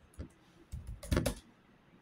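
Typing on a laptop keyboard: a few scattered key presses, with a short cluster of louder taps about a second in.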